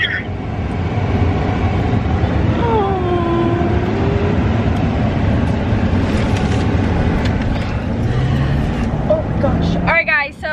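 Steady low rumble of road and engine noise inside a moving pickup truck's cabin.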